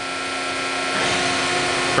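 Hydraulic power unit of a 200-ton four-post hydraulic press running steadily with a hum while the press holds at full tonnage and the dwell timer runs out. About a second in the sound shifts and gets a little louder as the press begins to decompress.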